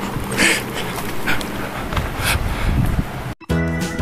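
Outdoor handheld-camera noise with a few short hissing bursts. Near the end the sound cuts out briefly and background music with a steady beat begins.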